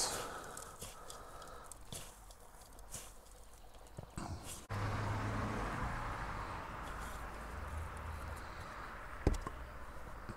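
Faint rustling and crumbling of orchid bark and sphagnum potting mix handled over a plastic bowl. After an abrupt change to a steady faint hiss with a low hum, the plastic pot knocks once on the table near the end as it is tapped to settle the mix.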